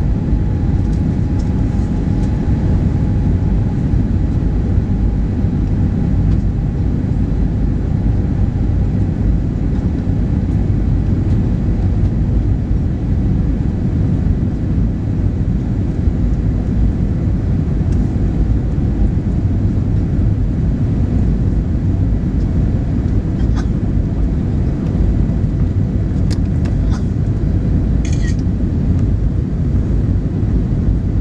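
Steady airliner cabin noise during the descent to landing: a loud, low rumble of the jet engines and airflow, heard inside the cabin. A faint steady whine fades away over the first ten seconds or so, and a few faint clicks come in the latter half.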